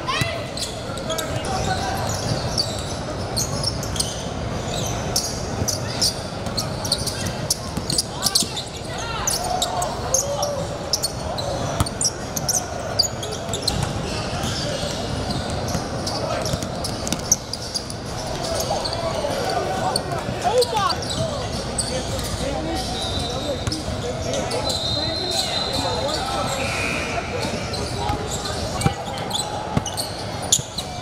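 Live sound of a youth basketball game in a gym: a basketball dribbled on a hardwood court, with the voices of players and spectators echoing in the hall.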